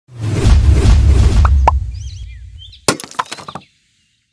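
Logo-reveal sound effects: a loud low rumble that swells and fades over the first few seconds, with short rising sweeps and high chirps, then a sharp hit just before the end followed by a few smaller clicks, cutting off at the end.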